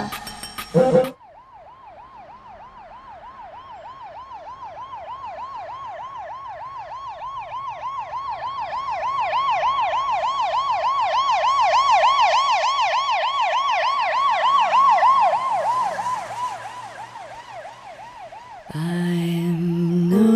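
A siren-like electronic warbling tone, wavering rapidly up and down in pitch, slowly swelling in loudness and then fading away. A different pitched sound, likely music, starts just before the end.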